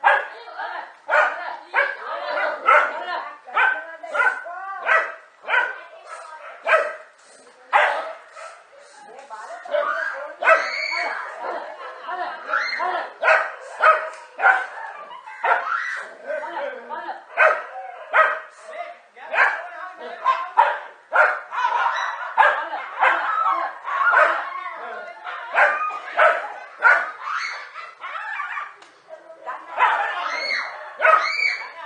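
Several dogs barking and yelping in rapid, continuous succession while attacking a snake.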